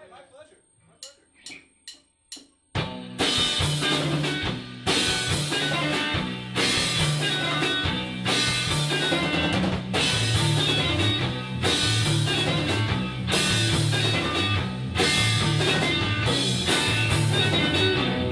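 Drumsticks click a quick count-in, then a rock band comes in loud about three seconds in: drum kit, bass and electric guitars playing live, with a heavy accented hit roughly every second and a half.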